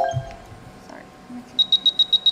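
A fast train of about seven short, high-pitched electronic beeps, lasting under a second near the end. At the very start, a brief rising run of tones dies away.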